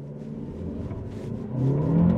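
Chery Tiggo 7 Pro's engine pulling under full throttle in sport mode during a standing-start 0–100 km/h run, heard from inside the cabin. The engine note grows steadily louder, then rises sharply in volume and pitch about one and a half seconds in.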